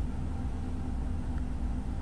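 Steady low background hum and rumble of room noise, with no distinct event.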